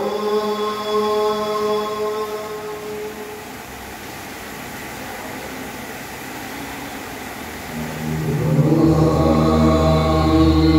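A man chanting mantras in long held notes. The chanting softens in the middle, then comes back louder and deeper from about eight seconds in.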